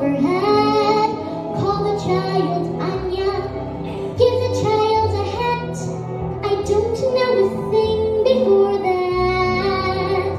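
A young girl singing a slow song with long held notes over a backing accompaniment whose low notes change about three seconds in and again near the end.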